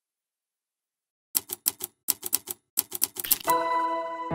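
About a second of silence, then about fifteen sharp, typewriter-like clicks in three quick runs, a typing sound effect for a logo animation. Near the end a sustained music chord comes in.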